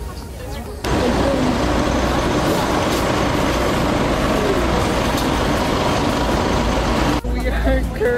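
Loud street traffic with a city bus close by. It starts abruptly about a second in and cuts off suddenly near the end, with faint voices underneath.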